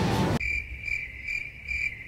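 A rush of noise that cuts off abruptly about half a second in, then a high, steady cricket chirping that pulses a few times a second.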